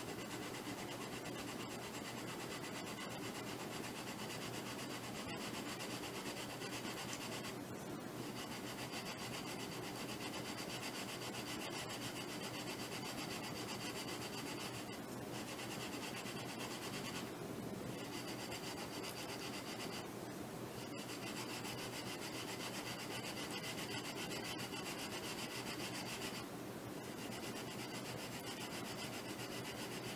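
A hand-held sanding block rubbing a thin balsa wood sheet in quick, short back-and-forth strokes to thin it down, giving a steady scratchy rasp. It stops briefly a few times.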